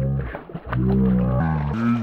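A man's drawn-out, low hollers of excitement: two long held calls, with a brief higher one near the end, as a bass is brought to the net.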